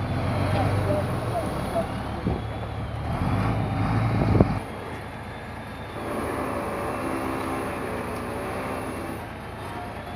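Loaded sand tipper truck's engine running, with a sharp clunk about four and a half seconds in; after it the engine sound drops and settles into a quieter, even hum.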